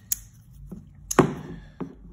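Sharp clicks and taps from a small titanium folding knife being handled and set on a hard plastic surface: a light click just after the start, the loudest about a second in with a brief ring, and a smaller one near the end.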